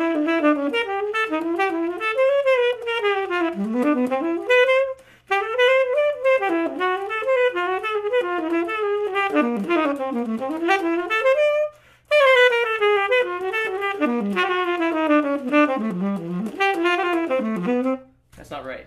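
Solo saxophone improvising a chorus of jazz blues in quick running lines of notes, breaking off for two short breaths about five and twelve seconds in.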